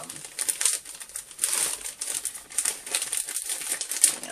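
Thin plastic 6x9 poly mailer crinkling and rustling in irregular bursts as a folded t-shirt is stuffed into it.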